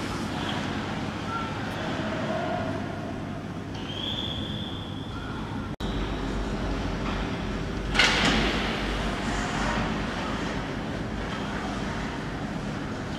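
Ice rink ambience during a hockey drill: a steady wash of skates on ice and the arena's background noise, with a single sharp crack, as of a puck or stick striking, about eight seconds in that rings out briefly.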